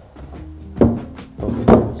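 Two knocks about a second apart from the front of a reptile enclosure being handled, over background music.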